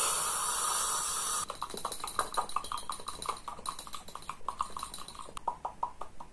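Mouth sounds made into a small cup held against the lips. A steady breathy hiss lasts about a second and a half and cuts off suddenly, then comes a quick run of clicks and pops, several a second.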